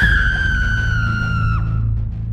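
A woman's long, high scream, held on one note and sliding slightly down in pitch before it breaks off near the end, over a low music drone.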